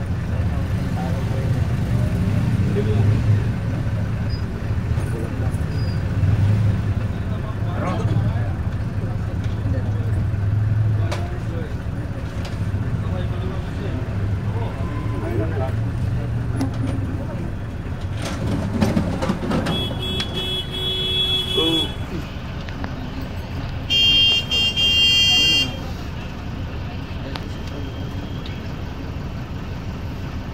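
Low steady engine hum of an idling vehicle, heard from inside it, with road traffic around. In the second half, two horn blasts of about two seconds each, a few seconds apart.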